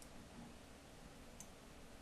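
Near silence with faint room tone, broken by a soft computer mouse click at the start and another about a second and a half in.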